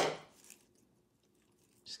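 Scissors snipping through the wired stem of an artificial flower pick: one sharp crunching cut at the very start.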